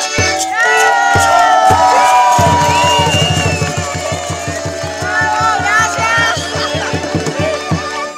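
Cajamarca carnival folk music played live: voices singing over a strummed guitar and a fast, even beat, with crowd noise around it. The beat stops just before the end.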